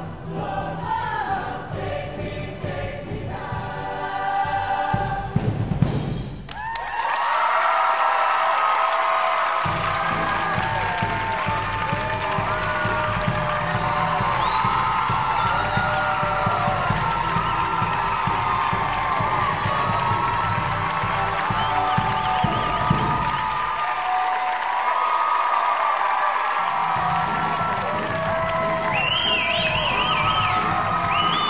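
A large mixed-voice high school show choir singing in harmony with band accompaniment. About six seconds in, the rhythmic section breaks off and the choir goes on with long held chords. The bass drops out twice during them, briefly.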